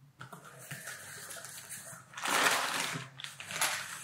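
Packaging rustling as a clear plastic bag of parts is pulled out of a cardboard box. It is loudest for about a second from two seconds in.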